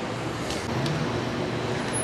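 City street traffic noise: a steady hum of passing road vehicles.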